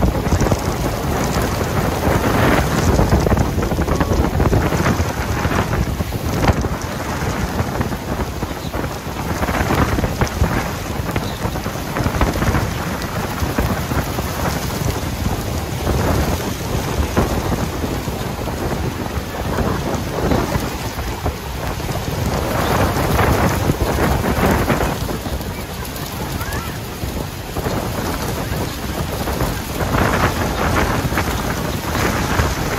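Steady rushing roar of Niagara's Horseshoe Falls, heard from a tour boat on the river close below it. The noise swells and eases in uneven waves.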